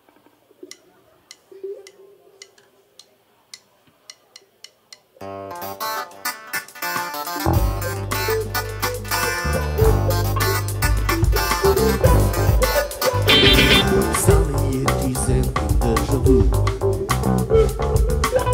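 A live rock band starts a song. After a few seconds of soft, regular ticking, guitar comes in suddenly about five seconds in, and bass and drums join about two seconds later for the full band sound.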